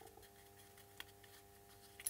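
Near silence: room tone with a faint steady hum and one faint click about halfway through, as the small plastic light housing is handled and screwed closed.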